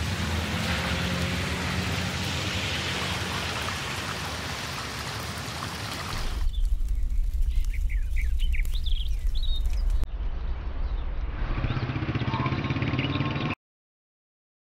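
Steady rain falling on wet ground, with a low hum underneath. About six seconds in it switches to a deep low rumble with birds chirping over it, and the sound cuts off abruptly just before the end.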